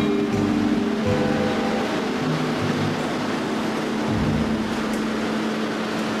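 Background music holding one long low note over the even rushing noise of a metro train at the platform.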